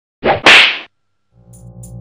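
Two quick, sharp slap-like hits, the second louder and longer. After a short silence, electronic music with steady synth tones and a ticking beat fades in.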